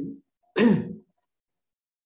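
A man clears his throat once, a single short, harsh burst about half a second in, heard over a video call.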